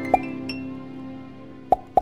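Cartoon pop sound effects, one just after the start and two more in quick succession near the end, over a sustained dreamy music chord that slowly fades.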